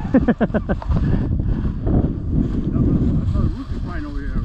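A man laughing in a quick run of short bursts, then wind buffeting the microphone with a low rumble.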